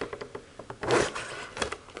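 Hard clear-plastic display case being turned by hand on a wooden tabletop: light scraping and rubbing with a few small clicks, the scrape loudest about a second in.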